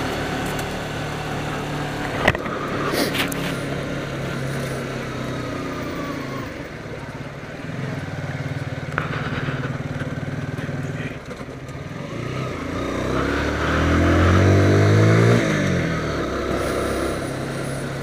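Motorcycle engine running as the bike rides along at low speed. Its pitch and loudness rise as it accelerates, peaking about fourteen to fifteen seconds in, then settle back.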